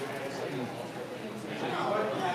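Background chatter of several people talking at once in a busy restaurant, with no one voice standing out.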